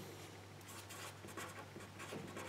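Marker pen writing letters on paper, faint.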